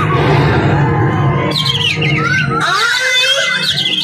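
Live stage music through a loudspeaker system, loud: a low sustained drone under a voice-like melody, then from about halfway through, quick high warbling trills.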